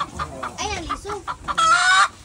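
A domestic hen clucking, then giving a loud, drawn-out squawk about a second and a half in.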